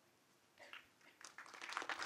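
Near silence, then audience applause that starts about a second in and swells toward the end.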